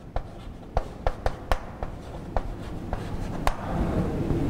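Chalk writing on a chalkboard: a run of irregular sharp taps and light scratches as a word is written out, the last tap about three and a half seconds in.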